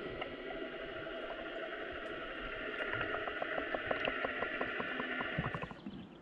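Underwater sound picked up by a submerged camera in a lake: a muffled, even hiss with faint steady tones, and a run of faint rapid clicks, about five a second, in the second half.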